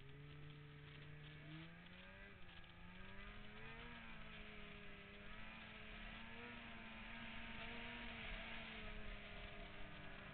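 Polaris 600 RMK snowmobile's two-stroke twin engine heard from the rider's helmet, rising in pitch as it accelerates from about a second and a half in, then holding a steady higher note while a rush of noise grows beneath it toward the end.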